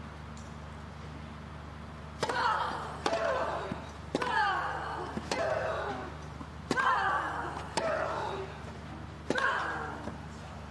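Tennis rally on grass: racket strings striking the ball seven times, about a second apart, starting about two seconds in. Each shot is followed by a player's grunt.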